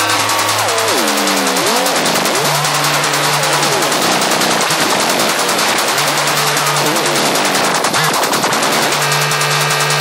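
Dark techno: a dense, very rapid run of percussive hits over synth lines that glide down in pitch and back up, with a low bass note held in repeated blocks.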